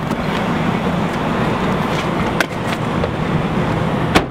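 Steady traffic and vehicle noise with a low hum, and a couple of short clicks about two and a half seconds in.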